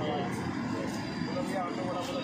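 Busy street ambience: people talking in the background over steady traffic noise.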